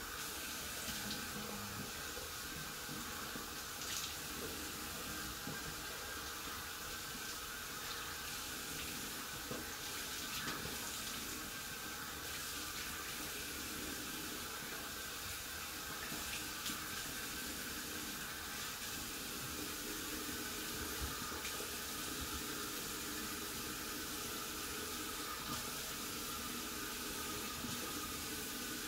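Bathroom sink tap running steadily, warm water splashing as a beard is wetted under it.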